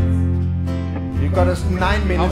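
Live acoustic rock band playing: strummed acoustic guitars over steady bass notes, with a voice singing from about halfway in.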